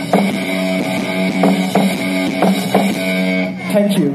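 Live rock band playing: electric guitar holding sustained notes over a drum kit, with sharp drum hits recurring throughout and a short dip near the end.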